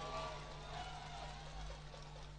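Faint background in a pause of an amplified outdoor speech: a steady low hum with faint, wavering pitched sounds in the distance.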